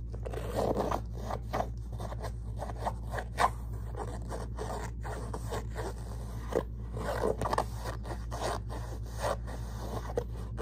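Fingernails scratching and tapping on the fabric body of a leather-trimmed handbag, in irregular short strokes with a few sharper taps.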